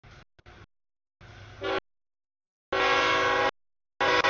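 Freight locomotive air horn sounding for the grade crossing as the train approaches. A short blast that cuts off abruptly is followed about a second later by a longer, louder blast.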